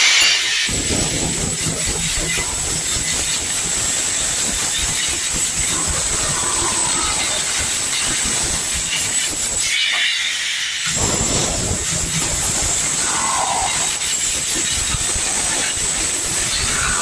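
Electric demolition hammer with a flat chisel bit hammering continuously as it chips ceramic wall tiles and mortar off a cement wall, stopping for about a second some ten seconds in.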